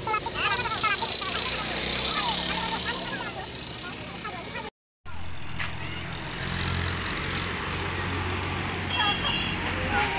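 Busy street sound: people's voices chattering over the low hum of vehicle engines on the road. The sound cuts out completely for a moment about halfway.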